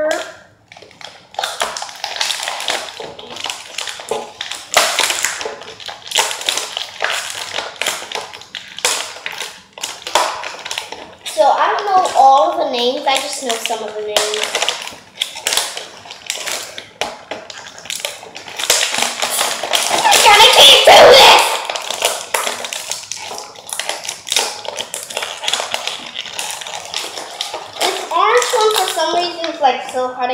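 Clear plastic toy packaging crinkling and rustling in the hands as a child works at tearing it open, with a louder stretch of crinkling about twenty seconds in. A child's voice breaks in briefly about twelve seconds in and again near the end.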